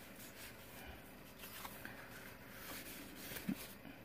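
Faint rustling and light tapping of paper tags and cardstock pages being handled and slid out of a journal pocket, with one sharper tap about three and a half seconds in.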